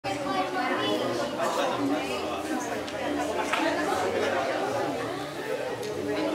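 Overlapping chatter of a small group of people talking at once, no single voice clear.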